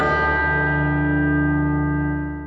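A bell-like music sting for a title card: a struck chord that rings out and holds steady.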